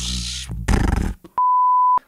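A man's Tasmanian Devil (Taz) impression, a rough growling noise in two short bursts. About a second and a half in, a steady high-pitched bleep cuts in, the loudest sound here, and runs for about half a second.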